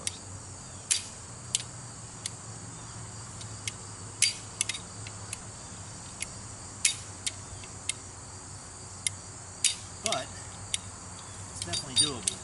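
Sharp metallic clicks at irregular intervals from a hand-crank winch's ratchet as the cable is let out to lower a heavy load. A steady chorus of crickets runs underneath.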